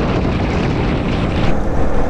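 Wind rushing over the microphone of a motorcycle rider at road speed, with the bike's engine and tyre noise blended underneath as a steady roar. The hiss eases slightly about one and a half seconds in.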